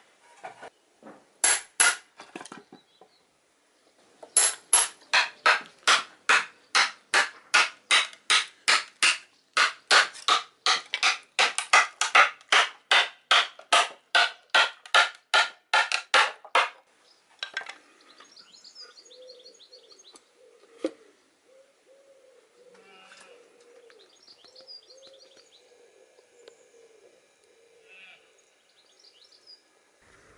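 Blows driving wedges into a block of oak to cleave it: a few separate strikes, then a long, even run of about three strikes a second that stops about 17 seconds in. Birds calling faintly after the striking stops.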